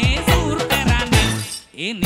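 A live band plays an upbeat song: a lead vocal over steady drum beats and bass. Near the end the band cuts out briefly, with a short swooping sound effect in the gap before the music comes back.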